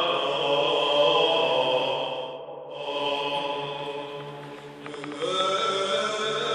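Byzantine chant sung by male voices: a melodic line winding through ornamented phrases over a steadily held low drone (the ison). A little past two seconds in the melody voice drops away briefly while the drone holds, then it comes back and climbs near the end.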